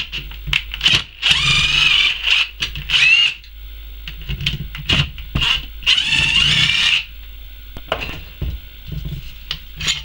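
Cordless drill running in two bursts, the first about two seconds long and rising in pitch near its end, the second about a second long, spinning the nuts off the two studs that hold the rear case onto an alternator. Small metallic clicks and knocks come between the bursts.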